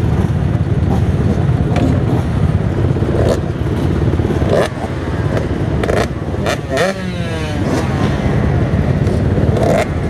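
Motocross bike engine running steadily at idle, with scattered knocks and clatter as the bike is handled. The pitch swoops briefly about seven seconds in.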